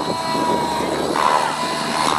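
Align T-Rex 700 flybarless radio-controlled helicopter flying 3D aerobatics: a steady high whine from its drive and rotor head over the rush of its main rotor blades, shifting briefly about halfway through.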